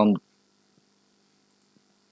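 Near silence with a faint steady hum, after a spoken word ends right at the start.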